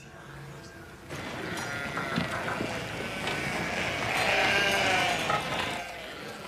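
Sheep bleating over a busy background that swells after about a second and is loudest near the end.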